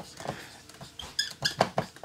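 Dry-erase marker writing on a whiteboard: short scratching strokes with a few brief high squeaks in the second half.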